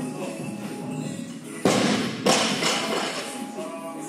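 Loaded barbell with rubber bumper plates dropped from overhead onto the rubber gym floor: two heavy impacts about half a second apart as it lands and bounces, over background music.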